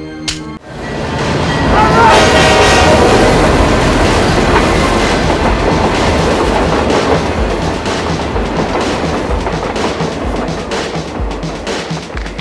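A train passing close by: a loud, steady rumble with a clatter of wheels over rail joints and a brief squeal about two seconds in. A short sharp click comes just before the rumble builds.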